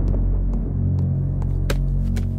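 A low, steady droning tone from a film's background score. Over it come a few light footsteps on a tiled floor, about two a second, the last one louder near the end.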